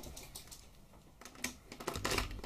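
Small objects clicking and rattling as a handbag is rummaged through and items are taken out: a few scattered, irregular clicks, more of them near the end.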